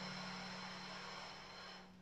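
Faint steady electrical hum under a soft hiss that slowly fades away.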